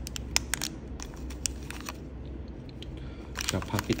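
Handling noise: a few light, sharp clicks and taps in the first second or so as small objects are moved about, over a steady low background hum.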